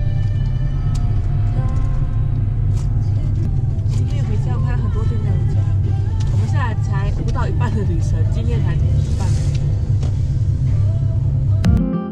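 Steady low rumble of a car's engine and tyres heard from inside the cabin while driving, with music and voices over it. The rumble cuts off abruptly near the end.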